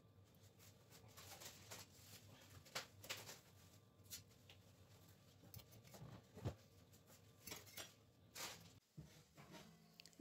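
Near silence with a few faint clicks and scrapes of a metal fork turning pork ribs in a terracotta baking dish.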